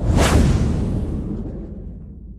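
Logo sting sound effect: a whoosh that swells in and peaks with a deep low boom about a quarter second in, then slowly fades away.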